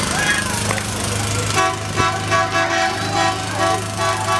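Vehicle horn tooting repeatedly from about one and a half seconds in, over the steady low hum of a running vehicle engine and some voices.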